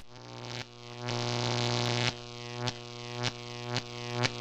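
Electronic outro music: a steady low synthesizer drone. Short swells in loudness end in a sharp hit, roughly every half second in the second half.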